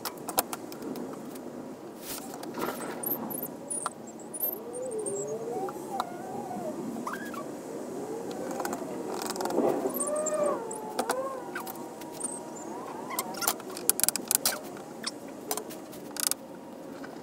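Bar clamps and wood parts handled on a workbench during a cabinet-door glue-up: sharp clicks and knocks, more of them near the end. A wavering, sliding pitched sound runs through the middle.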